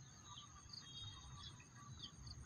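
Near silence: faint outdoor ambience with a few short, soft, high bird chirps.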